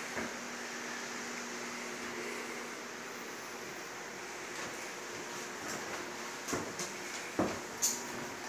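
Steady room noise inside a small wooden cabin, with a faint hum in the first few seconds. Near the end come a few short knocks of footsteps on the wooden floorboards.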